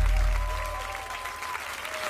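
Studio audience applauding while the music fades out.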